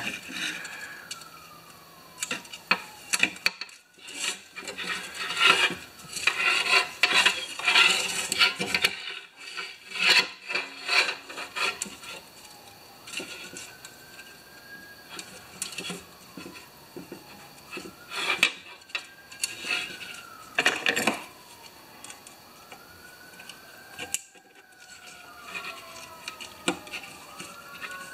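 Clicks, taps and scraping of metal and plastic as a lawnmower's recoil starter parts are worked by hand in their housing. From about halfway through, faint sirens wail, rising and falling, and sound like fake police sirens.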